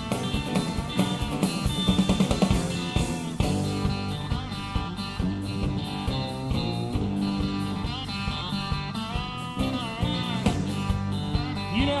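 Live country-rock band playing an instrumental passage: electric guitar over a steady drum beat.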